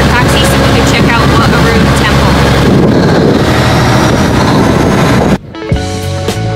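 Loud, steady low drone of a river passenger boat's engine under a voice. A little over five seconds in it cuts off suddenly and music with drums and guitar begins.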